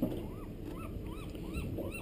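An animal making a series of short calls, each rising and falling in pitch, about three a second.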